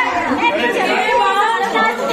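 Several people talking at once, their voices overlapping in a steady stream of chatter.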